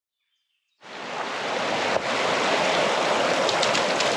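Water rushing and lapping over a stony shore, a steady wash that fades in from silence about a second in.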